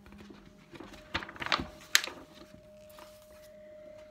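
Handling noise: rustling with a few light knocks and a sharp tap around the second second as plush hand puppets are picked up. A faint steady tone comes in about halfway.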